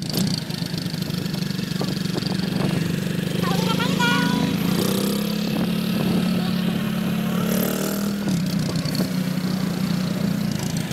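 Motorcycle engine of a tricycle running steadily, heard from the sidecar while riding along, with a brief change in its note about 8 seconds in.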